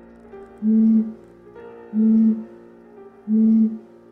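Three short, loud blown tones on one steady low pitch, each about half a second long and evenly spaced, from someone blowing across the mouth of a green glass bottle. Soft solo piano music plays underneath.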